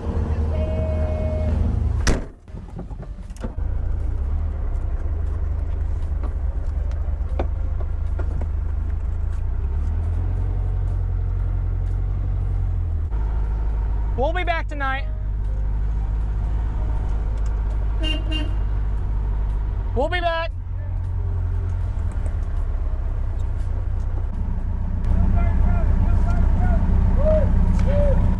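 Air-cooled Volkswagen Beetle flat-four engine running steadily at low speed, heard from inside the car, with an abrupt cut about two seconds in. Two short whooping shouts rise and fall over the engine around the middle.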